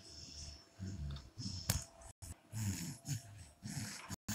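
Small dogs play-fighting, giving a run of short low-pitched grunts and breathy puffs and snorts, one after another.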